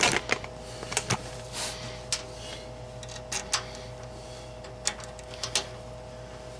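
Irregular clicks and light knocks, about a dozen, of a laser tube's mounting bracket being handled and fitted back on around the glass tube, over a steady hum.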